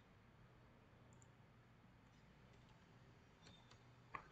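Near silence: faint room tone, with a couple of faint computer mouse clicks about three and a half seconds in.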